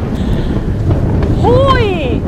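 Loud rumbling explosion sound effect, dubbed over a viewer's kiss video for the 'coração explode' segment. A brief high exclamation rises and falls near the end.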